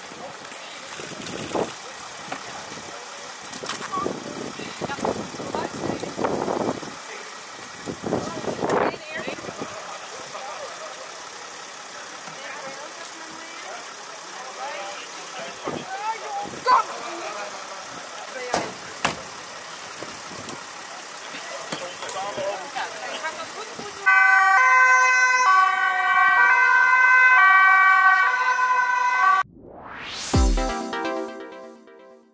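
Voices and scattered knocks over a steady street background noise. About 24 seconds in, electronic jingle music takes over and stops shortly before the end.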